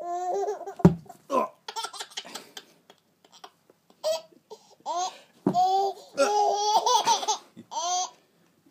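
A baby laughing in repeated bursts of high-pitched belly laughs. A single thump lands about a second in.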